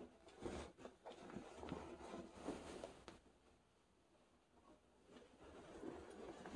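Faint rustling of a U.S. Army M-51 field jacket with its liner as it is lifted and pulled on, stopping for a couple of seconds in the middle and starting again near the end.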